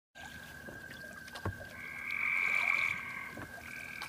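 Outdoor animal ambience at the head of a song recording: a steady high-pitched trill, a second, higher trill that swells up and fades in the middle, and a sharp click about a second and a half in.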